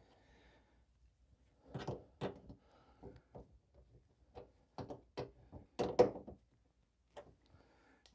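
Irregular light knocks and clicks, about ten of them, starting about two seconds in, as the plastic inner fender liner of a Pontiac Solstice is pushed into place and its top bolt is fitted by hand.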